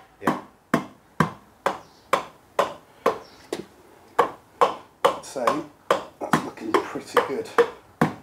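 Repeated sharp taps on a Kawasaki ZZR1100 cylinder block, about two a second, as it is worked down over the pistons. A more hollow tap is the usual sign that the piston rings are fully inside the bores.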